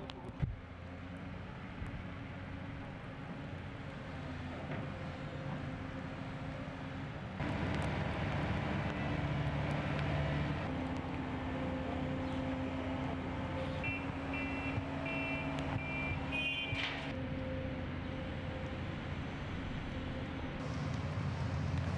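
Diesel engines of heavy road-construction machinery running steadily, louder from about seven seconds in. A reversing alarm beeps about twice a second for a few seconds in the later part, and there is a brief knock near the start.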